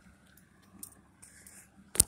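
Mostly quiet, with a few faint ticks and one sharp click near the end: a cigarette lighter being struck in an attempt to light a cigarette.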